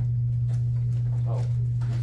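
A steady low hum, with a few faint footsteps and a sharp knock near the end as a person walks across a hard floor, and a short spoken "oh" in the middle.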